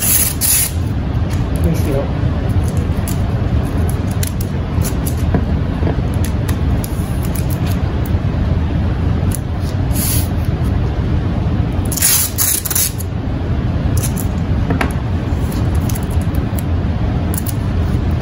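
Masking tape being pulled off the roll in short, noisy rips: one near the start, a brief one around ten seconds in, and the longest at about twelve to thirteen seconds. A steady low rumble runs underneath throughout.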